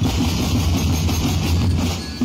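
Ati-Atihan street drum band playing: many bass drums and snare drums beaten together in a loud, dense, continuous drumbeat.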